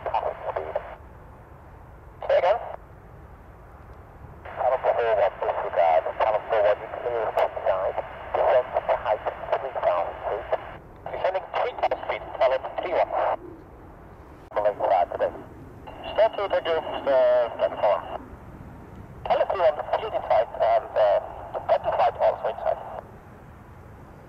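Air traffic control radio chatter from an airband scanner: a series of short, narrow-band voice transmissions that cut in and out abruptly, with low hiss between them. One transmission in the second half carries a steady high whistle under the voice.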